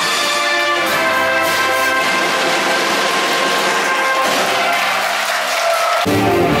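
A wind band of saxophones and trumpets playing, with long held notes.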